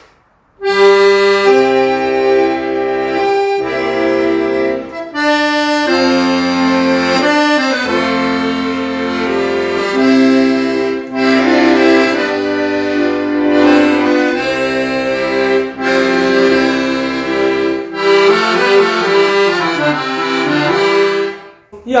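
Excelsior 37-key, 80-bass, three-reed piano accordion playing a tune with sustained chords and bass notes. It starts about half a second in, pauses briefly a few times and stops just before the end. The bellows hold good pressure, though not like new.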